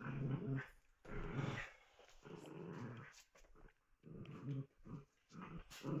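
Two small dogs play-growling as they wrestle, a string of short growls roughly one a second.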